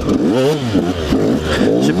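KTM 125 SX two-stroke motocross engine revving up and dropping back about half a second in, then running on with small throttle blips.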